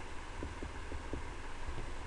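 About four faint computer-keyboard key taps in the first half, over a steady low hum.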